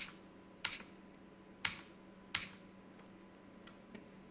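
Computer keyboard keys pressed four times at uneven intervals over about two and a half seconds, each a short sharp click, stepping a chart replay forward candle by candle. A fainter fifth click comes near the end.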